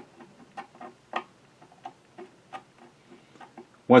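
A screwdriver turning a small grub screw into the oscillating-hook linkage of a Singer 66 sewing machine: a string of light, irregular metal clicks and ticks, the loudest about a second in.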